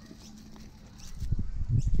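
Muffled low bumping and rumbling of handling noise on a phone microphone while a hand grabs a blue-tongue lizard among rocks. It is quiet for the first second, then loud in the second half.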